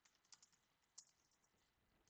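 A few faint keystrokes on a computer keyboard as a search term is typed.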